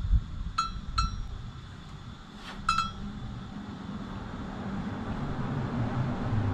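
Three short metallic clinks that ring briefly, about half a second, one second and nearly three seconds in, over a low rumble of sheep shifting on hay in a barn pen.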